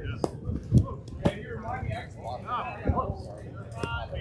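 Men's voices on an outdoor softball field, broken by several short, sharp knocks and slaps. The loudest is a dull thud about three-quarters of a second in, and the last one, near the end, rings briefly.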